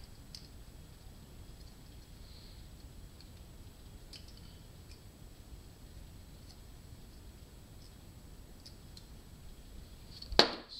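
A few faint, scattered light clicks of a thin steel oil-ring rail being worked into a Suzuki GS550 piston's ring groove by hand with a small screwdriver.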